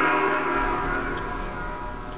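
A gong ringing and slowly dying away: many steady tones fading together.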